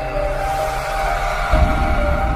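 Electronic intro music: held synth notes over a rising whoosh, with a deep bass hit about one and a half seconds in.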